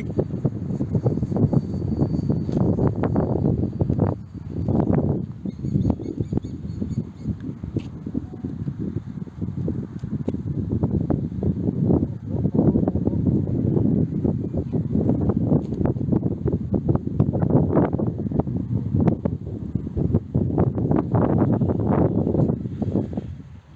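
Wind buffeting the microphone in gusts: a low rushing rumble that swells and dips irregularly throughout.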